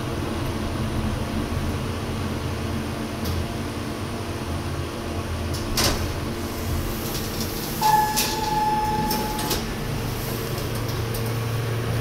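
Montgomery/KONE hydraulic elevator car arriving at its floor: a low steady hum, a sharp clunk about six seconds in as the car stops, then a single steady electronic beep lasting about a second and a half while the car doors slide open.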